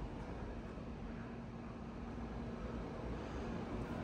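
Faint steady hum over low background noise at a DC fast-charging stall while a truck's charge ramps up; the cable cooling has not yet come on.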